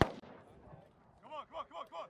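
A single gunshot right at the start, its echo dying away over the next half second. Then a man's voice calls out in short, pitched bursts near the end.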